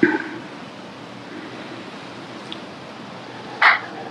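A short slurping sip of tea from a small glass cup, the loudest sound, about three and a half seconds in. It follows a brief soft sound at the very start and a quiet room hiss.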